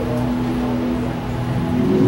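Music: a low chord held steady under a pause in the preaching.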